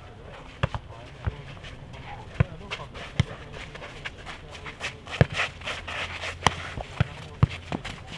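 A footnet ball being kicked, headed and bouncing on a clay court during a rally: about nine sharp thuds at irregular intervals, the loudest about five and six and a half seconds in.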